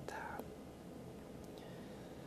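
A brief soft, breathy voice sound at the very start, then quiet room hiss.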